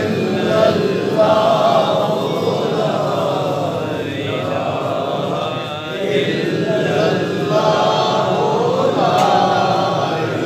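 A group of men chanting a devotional recitation together, many voices overlapping in a steady, continuous drone.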